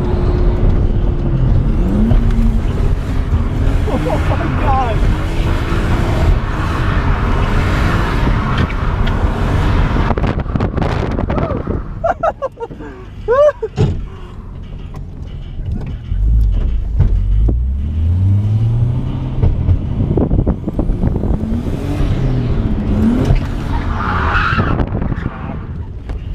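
Nissan R32 Skyline GTS-t drift car heard from inside the cabin, its engine revving up and down through a drift run with tyres squealing and skidding. Past the middle the revs and level drop for a few seconds, then the engine climbs again.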